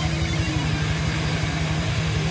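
Live heavy metal band playing: distorted electric guitars hold a low riff over a fast, even pulse, loud and dense throughout.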